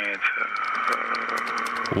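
A man's voice, a brief bit of speech and then one steady drawn-out sound held for about two seconds.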